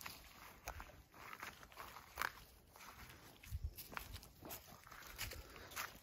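Faint footsteps on grass and loose, dug-up earth: a scatter of soft, irregular crunches and rustles.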